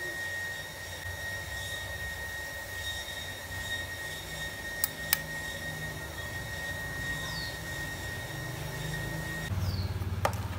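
Steady low rumble under a constant high whine, with two light clicks about five seconds in; the whine stops just before the end as the rumble grows louder.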